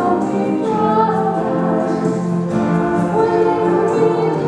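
A woman singing a slow song in long held notes, to a strummed acoustic guitar, amplified through a small PA.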